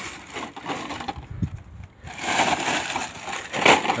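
Hands handling a plastic bottle of PVC clear glue: irregular rubbing and scraping, with a low knock about a second and a half in and louder scraping in the second half.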